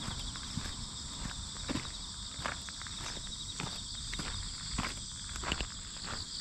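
Footsteps of a person walking on a dirt and grit path, short scuffing steps at a steady walking pace. Behind them runs a steady high-pitched chorus of insects.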